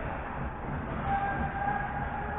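Ice hockey rink game sound: steady noisy rink ambience with low rumble. From about halfway through, a steady high tone of unclear source is held.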